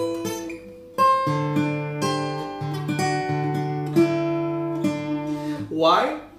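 Takamine steel-string acoustic guitar fingerpicked: a short phrase of single melody notes over a low bass note left ringing, with a sharp pluck about a second in.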